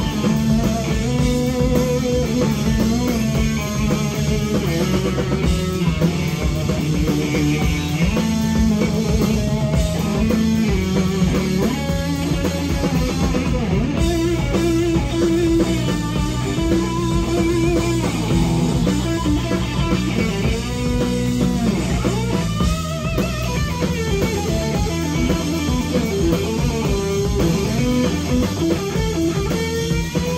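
Live psychedelic rock power trio playing an instrumental passage: electric guitar lead lines that bend in pitch, over bass guitar and a drum kit, loud and without let-up.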